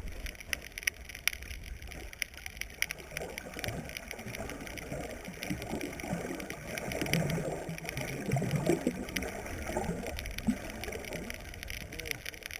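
Underwater sound of water gurgling and churning as a snorkeller swims, loudest in the middle, with scattered faint clicks throughout.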